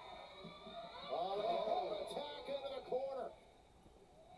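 A man's voice talking, quieter than the loud commentary around it, from about a second in until just past three seconds.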